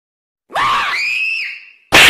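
A woman's high-pitched scream starting about half a second in: it rises in pitch, holds for about a second, then falls away. Loud laughter breaks out right at the end.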